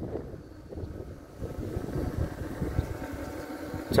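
Car driving along, heard from inside the cabin: a low, fairly quiet rumble of tyres and engine that rises slightly after the first second or so.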